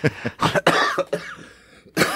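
Men laughing in a few short, choppy bursts that die away about halfway through.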